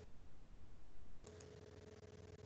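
Quiet pause: a faint steady electrical tone in the background noise, which drops out for about the first second while a faint, uneven rustle is heard.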